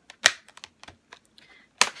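Clicks and taps of a cosmetics palette's packaging being handled as it is worked out of its box: two sharp, loud clicks, one about a quarter second in and one near the end, with light ticks between.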